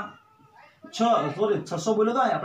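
A man's voice speaking after a pause of just under a second.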